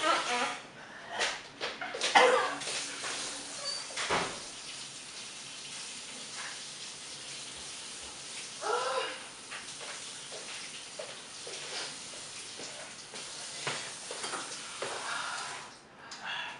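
Water running steadily from a kitchen tap into the sink as hot sauce is spat out and the mouth rinsed, with a few short vocal noises over it.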